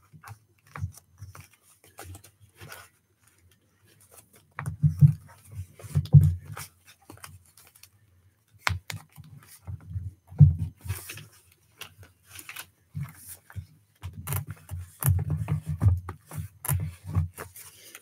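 Paper being handled and pressed flat by hands on a wooden desk: scattered rustles and small clicks, with dull knocks on the table about five, six and ten seconds in and several more near the end.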